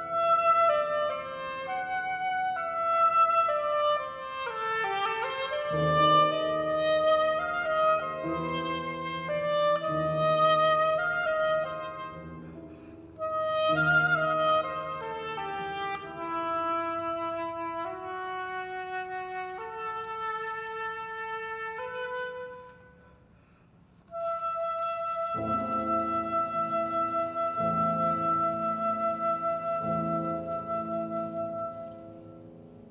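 Oboe playing a moving melody with piano accompaniment. After a short pause about three-quarters of the way through, the oboe holds one long note while the piano comes in under it with sustained chords.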